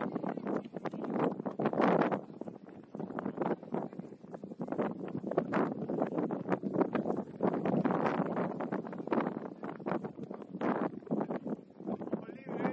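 Wind buffeting the microphone of a pole-mounted match camera, coming in irregular gusts that rise and fall throughout.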